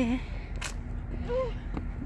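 A voice trailing off at the start and a brief vocal sound about two-thirds through, over a steady low outdoor rumble, with one sharp click just after half a second in.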